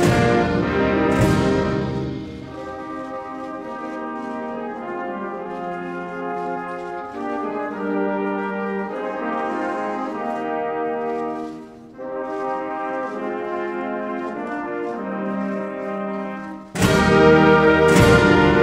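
A brass band plays a national anthem in sustained chords. It is loud at first, softer through the middle, and swells loud again near the end.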